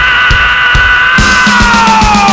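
Live rock band playing loud: a long held high note over a steady bass-drum beat. About a second in, cymbals and a bass note come in, and the held note starts to slide downward.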